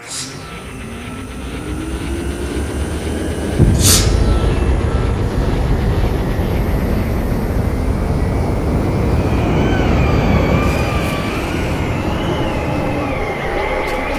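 A loud, low rumble that builds and grows sharply louder about three and a half seconds in, with a brief sweeping whoosh just after. Wavering, warbling high tones ride over it from about ten seconds on.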